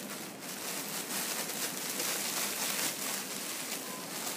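Clear plastic bag and nylon tulle netting rustling and crinkling as a hooped petticoat is handled and pulled from the bag, a continuous crackling hiss that is loudest in the middle.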